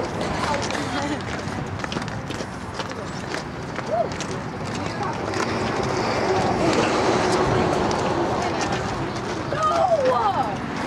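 Distant voices of softball players and spectators calling out and chattering, none of it close enough to make out, with scattered light clicks.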